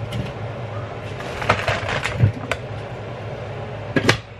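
Plastic bag of fries rustling as it is handled, with a few sharp crackles around the middle, over a steady low hum.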